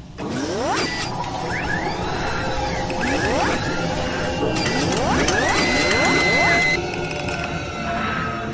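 Synthetic sound effects of an animated logo intro: rising sweeps in three waves a couple of seconds apart over a dense machine-like texture, with a steady tone held a little past the middle before the sound shifts.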